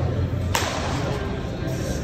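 A single sharp smack about half a second in, a baseball striking something in an indoor training hall, trailing off with echo, over a steady low hum.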